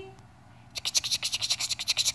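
Rapid rhythmic scratching, about ten quick strokes a second, starting under a second in and lasting nearly two seconds.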